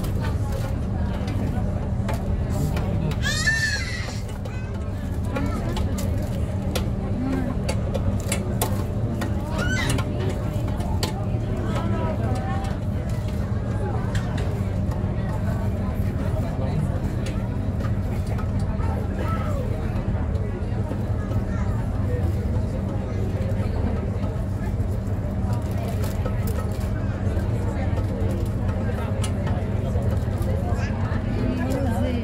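Steady drone of a river tour boat's engine, a constant low hum, with faint passenger chatter in the background. About three and a half seconds in, a brief high rising sound cuts through.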